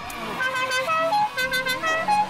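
A horn playing a quick tune of short, steady notes that step up and down in pitch.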